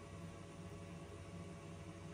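Faint steady electrical hum with a soft hiss from an inverter running under a load of about 40 amps.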